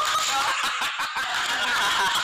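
A man laughing hard and loudly.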